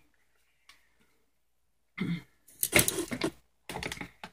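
A woman clearing her throat: after a near-silent pause, a brief voiced sound about halfway in, then a loud rough burst and a shorter one near the end.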